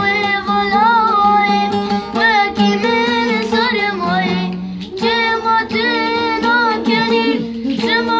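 A boy sings in a child's voice while strumming a saz (bağlama), the long-necked Kurdish and Turkish lute, in a quick, steady rhythm.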